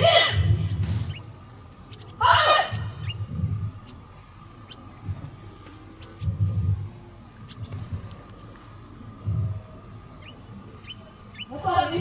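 A single shouted drill command about two seconds in, followed by several scattered low thuds.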